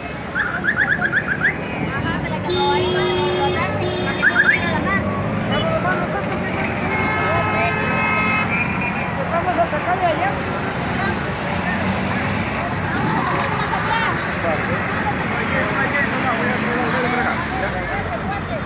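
Busy street noise of a protest march: crowd voices and traffic, with vehicle horns sounding twice, once about three seconds in and again about eight seconds in.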